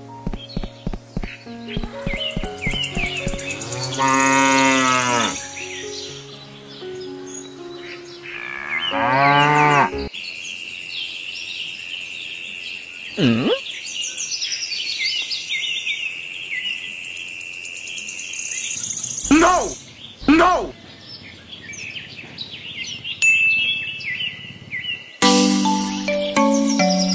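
A cow mooing and birds chirping, laid over light background music that drops out for a stretch in the middle and comes back near the end.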